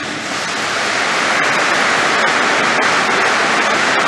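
A large audience applauding, a dense sustained clapping that swells over the first second and then holds steady.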